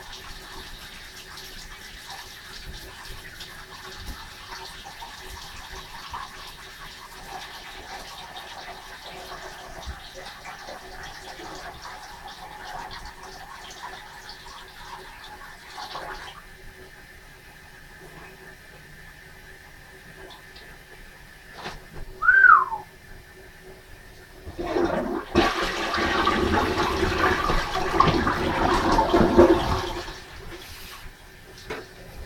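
Water rushing loudly for the last five seconds or so, after a faint steady hiss and a single short squeak that falls in pitch.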